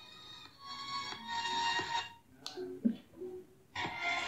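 Song playing faintly through a cheap waterproof Bluetooth shower speaker floating in a bowl of water, the volume very low.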